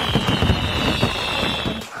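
Fireworks sound effect: a long whistle that falls slowly in pitch over a dense crackle of pops, with the whistle cutting off near the end.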